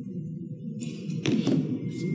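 A single thump a little over a second in, over steady low background room noise.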